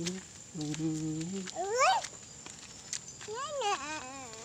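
Wordless vocalising: a low voice held on one steady note twice, then a sharp rising squeal, and near the end a higher wavering call.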